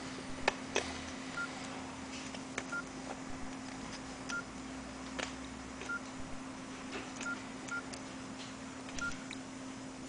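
Nokia N95 8GB keypad tones as its keys are pressed: about seven short, identical beeps at uneven intervals, with faint clicks of the keys. A steady low hum runs underneath.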